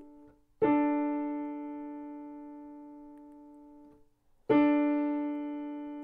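Piano playing two notes together as an ear-training interval, for the listener to pick out and sing back the lower note. It is struck twice, about half a second in and again about four and a half seconds in, and each time it rings and slowly dies away.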